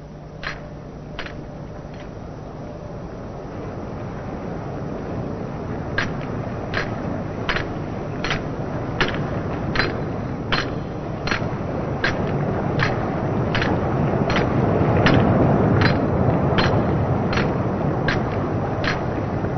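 Cartoon sound effects: sharp, evenly spaced ticks about every three-quarters of a second, the Tin Man's careful footsteps as he crosses the narrow bridge, over a low rumble that grows louder toward the end.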